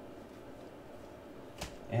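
Faint handling noise of Panini Select basketball trading cards being flipped through by hand, with one sharp click about a second and a half in.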